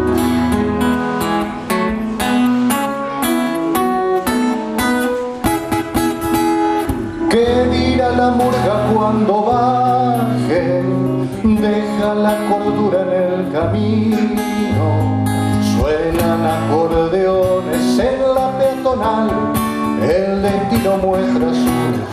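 Live band music: an acoustic guitar strummed in steady chords, joined about seven seconds in by a man singing, over low bass notes.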